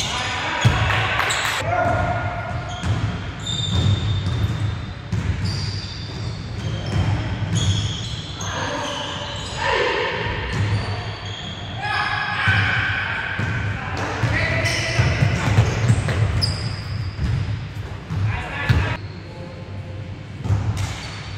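A basketball bouncing and knocking on a hardwood court during a pickup game, with players calling out, all echoing in a large gym hall.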